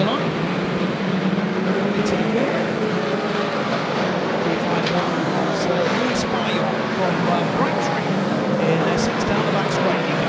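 A pack of saloon stock cars racing together, their engines merging into one steady drone, with a few short sharp clicks over it.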